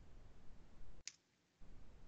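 A single sharp click at the computer about a second in, as a code completion is picked, over faint steady microphone hiss that cuts out for about half a second right after it.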